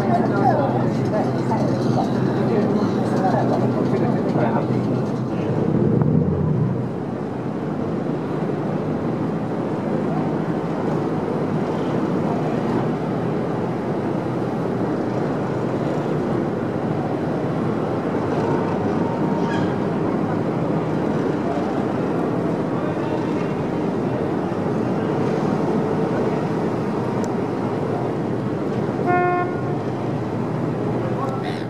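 Harbour ferry's engine running with a steady hum under background voices, and a short horn toot about a second before the end.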